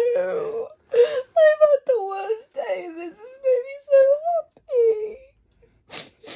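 A woman crying with joy: high, wavering tearful wails and whimpers with no words, which stop near the end.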